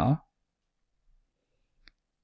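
A man's voice ends a word at the very start, then near silence with one faint, short click near the end.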